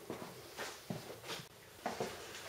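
Faint handling noise: soft rustling and a few light knocks as the cigar box guitar is moved about.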